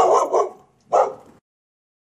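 Three short barks: two close together at the start, then a third about a second in.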